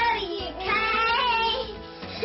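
A young girl's voice chanting a sing-song cheer, with one long drawn-out syllable in the middle.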